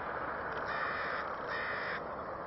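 A bird calls twice, each call about half a second long. Beneath the calls is the steady rumble of a freight train of empty oil tank cars passing at a distance.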